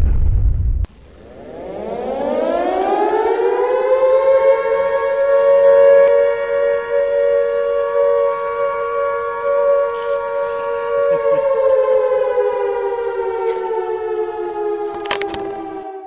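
A loud explosion rumble cuts off under a second in. Then a civil defense siren winds up over about two seconds, holds a steady wail, and slowly winds down in pitch over the last few seconds.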